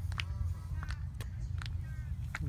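A small child's kisses: several short, sharp lip-smack clicks with faint brief voice sounds, over a steady low rumble.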